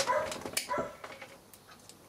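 A dog giving two short, high-pitched barks in the first second.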